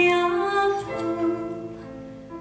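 A woman singing a slow, held melody through a microphone, with a Yamaha digital piano accompanying her; the music grows softer from about halfway through.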